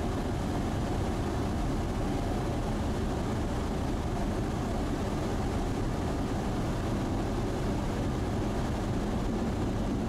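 Steady cockpit noise of a Sling light aircraft gliding on final approach with its engine throttled back for a simulated engine failure: a low engine and propeller hum under steady airflow.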